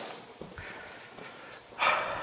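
A man breathing close to the microphone between phrases: a breathy exhale at the start and a short, sharp intake of breath near the end, with quiet between.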